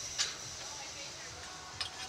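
Two short sharp clicks about a second and a half apart, over a low steady background.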